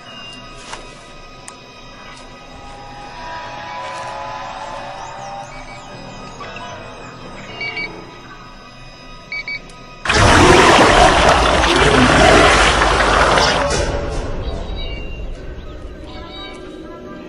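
Film soundtrack: a quiet, tense music bed with faint chirps and a few short beeps. About ten seconds in, a sudden loud blast of noise takes over, lasts about four seconds and fades away.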